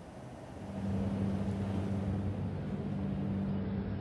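Steady low engine hum, fading in about half a second in and holding even, over a faint outdoor noise.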